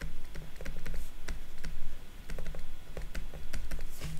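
Plastic stylus tapping and scratching on a tablet's writing surface during handwriting: an irregular run of light clicks, several a second.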